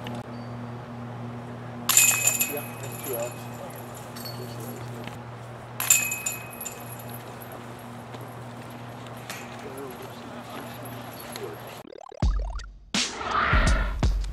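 Two sharp metallic clanks with a short ringing, about two and six seconds in: discs striking the chains and wire basket of a disc golf target. A steady low hum runs underneath. Near the end a loud swoosh leads into music.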